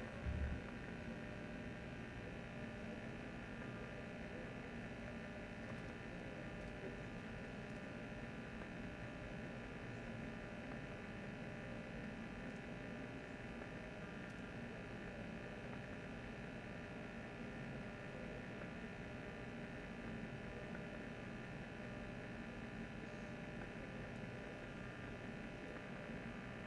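Steady electrical hum and hiss with many fixed tones, from a microphone that is not working properly. There is a brief low thump right at the start.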